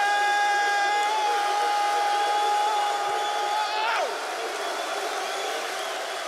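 A man's long shout into a microphone, held on one high pitch for about four seconds and then dropping away, over a crowd of men cheering and shouting.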